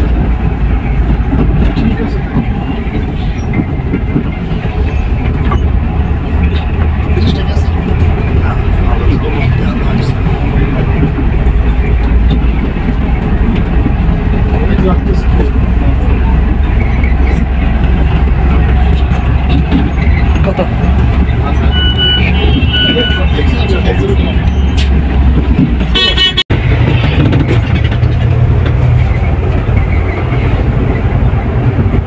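Steady low rumble of a Volvo coach's engine and road noise heard from inside the cabin while driving. Short horn toots come a little after twenty seconds, then a louder horn blast just before a brief cut in the sound.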